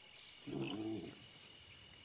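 A small mammal, Didelphodon, gives one short whining call a little under a second long, about half a second in.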